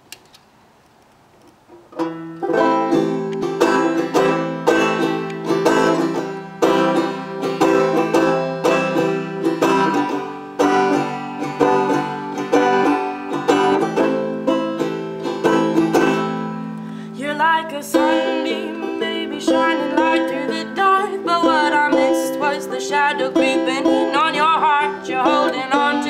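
Banjo picking a folk tune, starting about two seconds in after a short near-silence. About two-thirds of the way through, a higher, wavering melody joins above the picking.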